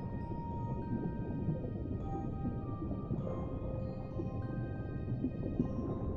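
A slow music box lullaby, single notes starting about once a second and ringing on, over a steady deep underwater rumble.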